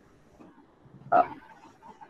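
A dog barking once, a short loud bark about a second in, over a faint background.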